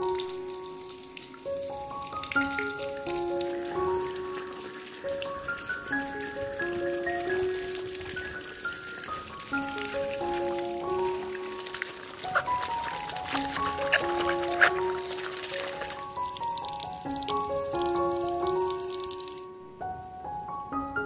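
Background music with a repeating melody of light keyboard or mallet notes, over water running from a plastic pipe tap and splashing onto sandals and feet, the splashing strongest around the middle and stopping just before the end.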